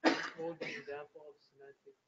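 A man clears his throat loudly, a sudden harsh rasp that runs into a short voiced grunt, followed by a few faint murmured syllables.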